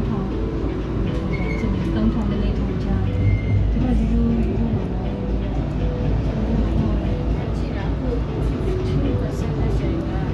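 Steady low rumble of an MRT train running, heard from inside the carriage, with indistinct voices talking in the background.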